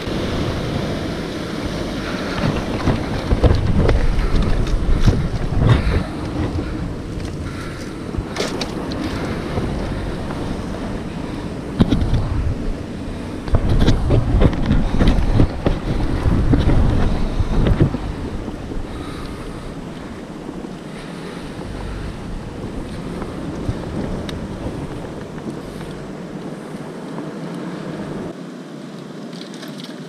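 Wind buffeting the microphone over surf breaking on rocks, in strong gusts about three to six seconds in and again from about twelve to eighteen seconds, with a few sharp clicks between. The wind eases off in the last ten seconds, leaving a softer wash of sea.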